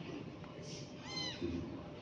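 A kitten mewing once, a short high mew that rises and falls about a second in.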